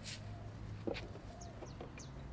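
Chickens clucking softly in short repeated calls, with leaves of a flowering vine rustling under a picking hand and one sharp snap just before a second in.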